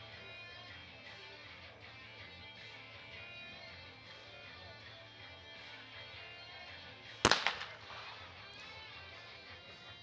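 A single 12-gauge over-and-under trap shotgun shot about seven seconds in: one sharp crack with a short echo as the shooter fires at a clay target and breaks it. Faint guitar background music plays throughout.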